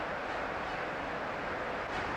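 Cricket ground crowd cheering a catch, a steady wash of crowd noise heard through an old TV broadcast.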